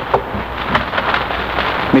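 A couple of sharp knocks on a door, a radio-drama sound effect, over the steady hiss and crackle of an old 1940s broadcast recording.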